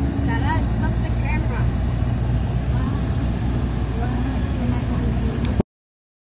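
Steady low rumble of a van driving, heard from inside the cabin, with faint voices in the background. The sound cuts off abruptly about five and a half seconds in.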